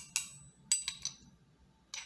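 Steel open-end wrench tapping against a chrome socket: several sharp metallic clinks with a brief ring, most of them in the first second.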